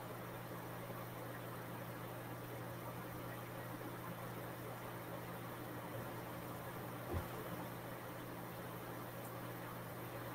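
Steady low electrical hum with hiss, the background noise of an open microphone on a video call, with one faint soft thump about seven seconds in.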